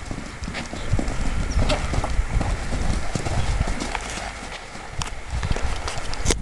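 Hoofbeats of a ridden horse trotting on a sand arena surface, a run of dull thuds.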